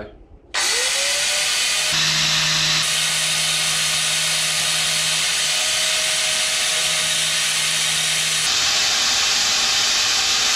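Angle grinder with a sanding disc starts about half a second in, winding up with a short rising whine, then runs steadily while the disc is brushed lightly along the steel teeth of a hedge cutter's blade, sharpening them.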